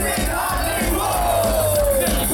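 Live metal band playing, heard from the audience, with the crowd shouting over it. In the second half a single long note slides slowly down in pitch.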